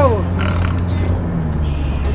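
Steady low rumble of a moving car heard inside the cabin, with music playing in the background.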